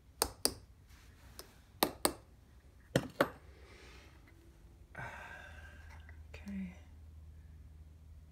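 Metal rod tapping on a metal casting pattern bedded in green sand, rapping it loose before it is drawn from the mold: a string of sharp taps, mostly in quick pairs, over the first three seconds. After that a man sighs and gives a short low hum.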